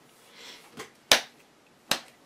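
Two sharp taps, a little under a second apart, as game cards are put down on the table.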